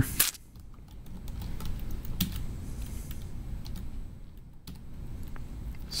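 Computer keyboard typing: irregular key clicks as a command is typed into a terminal.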